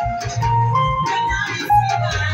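Live band playing lingala-style music: an electronic keyboard melody of held notes over bass and a steady drum beat.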